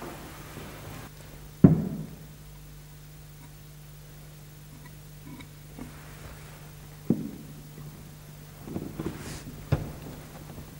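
Maple chair parts being handled and fitted together on a wooden workbench during regluing: a few sharp wood-on-wood knocks, the loudest about two seconds in and others near seven seconds and near the end, over a steady low hum.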